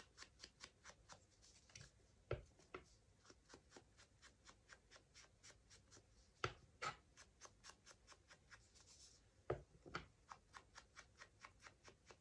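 Foam ink blending tool dabbed over and over against paper edges: quiet, quick taps at about four a second, with a few louder knocks.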